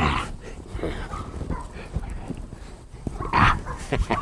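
A puppy making short, scattered sounds, the loudest about three and a half seconds in.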